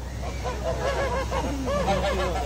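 Several geese honking: a run of short, repeated calls that overlap, starting about half a second in.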